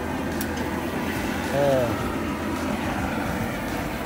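Propane torch burner running with a steady, even hiss while its flame singes the hair off a wild hog's hide. A man's short "er" is heard about a second and a half in.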